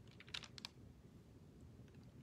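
Near silence: faint room tone, with a short cluster of faint clicks about a third of a second in.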